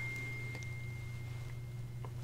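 A faint, steady high-pitched pure tone that stops about a second and a half in, over a low steady hum.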